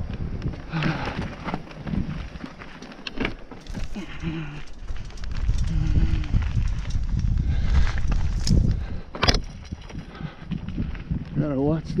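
Mountain bike descending a rough dirt trail: steady rumble of tyres and wind on the microphone, with scattered clicks and knocks as the bike rattles over rocks, and a few brief voice sounds from the rider.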